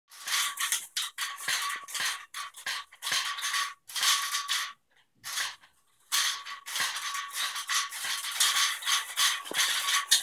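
A cat batting at a lace curtain's beaded fringe strands with its paws, the fringe rattling in quick irregular bursts that stop for about a second around the middle.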